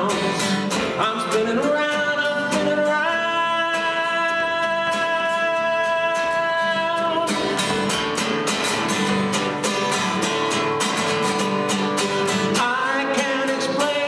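A man singing to his own strummed acoustic guitar, holding one long note from about three to seven seconds in.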